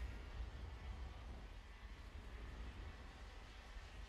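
Faint, steady track sound of 125cc two-stroke KZ2 gearbox kart engines running, a low rumble with a thin haze and no single engine standing out.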